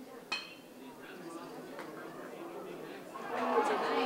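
A metal baseball bat strikes a pitched ball with a sharp ping about a third of a second in. Crowd chatter in the stands follows and grows louder in the last second.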